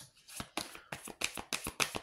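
A deck of tarot cards being shuffled by hand: a quick, irregular run of soft card slaps, about six a second.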